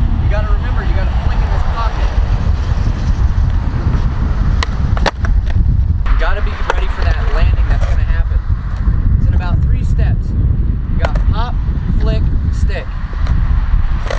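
A loud, unsteady low rumble of wind and passing road traffic, with a man's voice at times and two sharp knocks about five seconds in.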